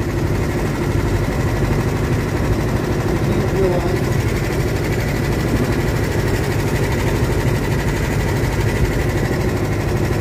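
Go-kart engine idling steadily, an even drone that holds without revving.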